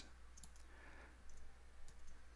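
A few faint, isolated clicks at a computer while the user works a search filter, over a low steady hum.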